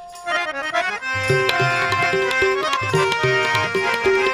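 Harmonium playing a run of notes, joined about a second in by tabla in a steady rhythm with deep bass strokes, as an instrumental passage of Sikh kirtan.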